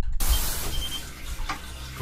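Steady hiss over a low hum, with a short high beep about half a second in and a light click about a second and a half in, as buttons are pressed on a Paloma gas water heater's control panel to raise the water temperature.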